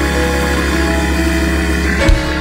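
Organ holding a sustained chord over a deep, steady bass note.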